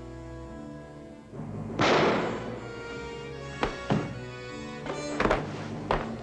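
Dramatic orchestral film music with held, sustained tones, broken about two seconds in by a loud crash that fades quickly, then by several sharp knocks over the last few seconds.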